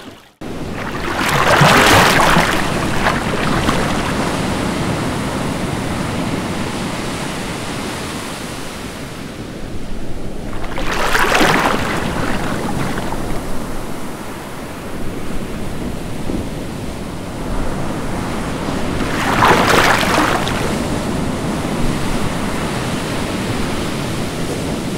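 Ocean surf: a steady rush of waves with three louder swells, about nine seconds apart, as each wave breaks.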